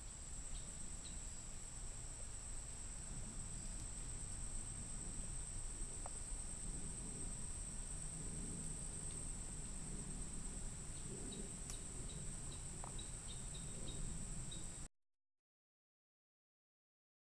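Insects trilling in a steady, continuous high-pitched chorus over a low rumble, with a few faint short chirps near the end. The sound cuts off suddenly about a second before the end.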